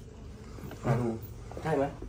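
Two short spoken utterances from a person over faint room noise.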